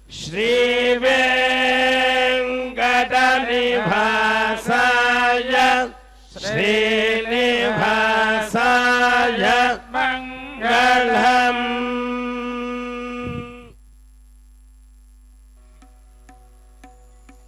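Vedic mantras chanted in Sanskrit on a nearly level pitch, in phrases broken by short breaths, stopping about thirteen and a half seconds in.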